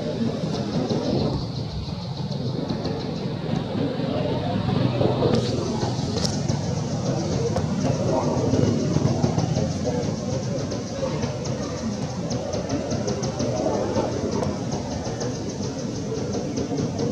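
Indistinct voices murmuring over general outdoor background noise, with a fast, high-pitched pulsing buzz running on top that steps up in pitch about five seconds in.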